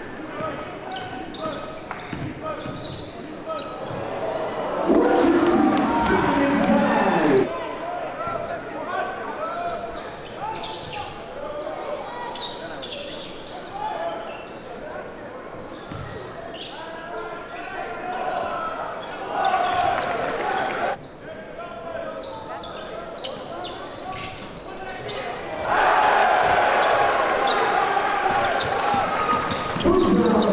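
Live basketball game sound in a large gym: a ball dribbling on the hardwood under crowd noise. The crowd swells loudly about five seconds in, again near twenty seconds, and from about twenty-six seconds on.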